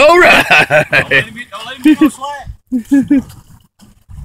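Men talking and chuckling, with the voices trailing off near the end.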